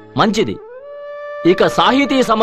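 A man's voice in short bursts, with a steady held musical note coming in about half a second in, rising slightly and then holding on beneath the voice.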